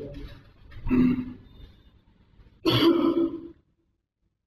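Two short, loud vocal sounds from a person's voice, like grunts or clipped words, one about a second in and a longer one near the end; then the sound cuts off to dead silence.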